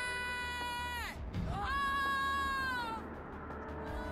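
Background music: two long, high sustained notes, each bending down in pitch as it ends, with a short break between them over a low steady hum.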